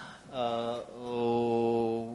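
A man's voice drawing out a long hesitation sound, an 'uhh' held on one level pitch. It breaks off once, about a second in, and then carries on.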